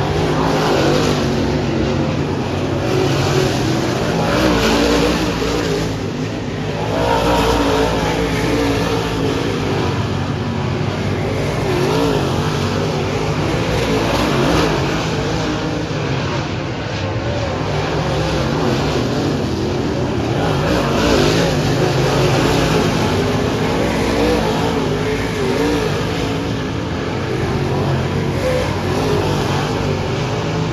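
Several dirt-track race cars' engines running together around the oval, a continuous layered engine sound whose pitch keeps rising and falling as the cars accelerate and lift.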